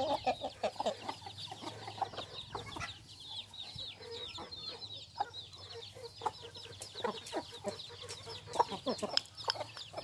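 Village chickens: chicks peeping constantly in quick, high, falling cheeps, with hens clucking low among them. Near the end come a few sharp taps as beaks peck at a small dish.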